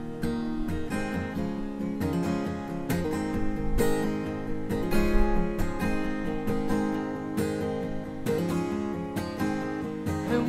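Steel-string acoustic guitar strummed in a steady rhythm, chords ringing on without singing.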